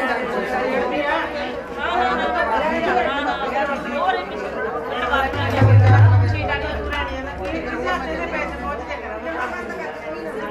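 Many women chattering at once, several conversations overlapping. A brief low hum swells and fades about halfway through.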